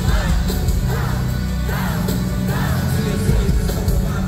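Live hip-hop concert music heard from the audience floor: a band playing with heavy bass under melodic sung phrases that rise and fall about once a second.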